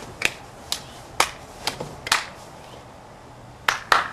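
Sharp taps on a homemade cardboard-box mock computer, about one every half second, then a pause and two more near the end.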